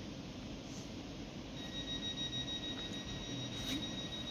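Steady high-pitched whine over a low rumble of an electric train at the station, the whine growing stronger about a second and a half in.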